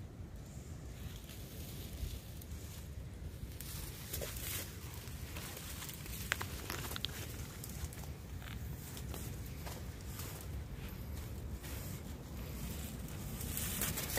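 Footsteps crunching through dry leaf litter and brushing past twigs and stems, becoming busier a few seconds in, over a steady low rumble.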